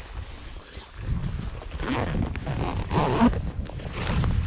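Long dry grass rustling and swishing against clothing and the camera as a person crawls through it, in uneven swishes that grow louder about a second in.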